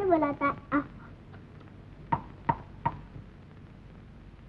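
A child's voice making drawn-out, wordless sounds in the first second. About two seconds in come three sharp knocks, each about 0.4 s apart and ringing briefly.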